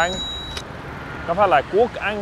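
Two people exchanging short greetings over steady motorbike and car traffic on a city street.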